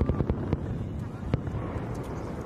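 Aerial fireworks bursting: a quick run of cracks and pops at the start, then single sharper bangs about half a second and about a second and a half in, over a steady low background rumble.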